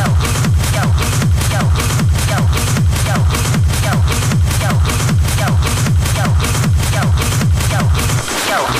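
Hard techno in a DJ mix: a heavy four-on-the-floor kick drum at about two and a half beats a second, with short falling synth tones over it.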